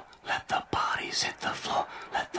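Whispered speech: a quick run of short, hissy whispered words with brief gaps between them.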